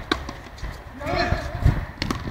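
A frontenis ball struck once with a racket or off the wall near the start, a single sharp crack, followed about a second in by a brief wordless call from a player.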